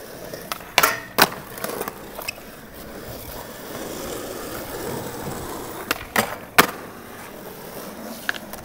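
Skateboard wheels rolling on smooth concrete, with sharp clacks of the board hitting the ground: two about a second in and three more around six seconds in.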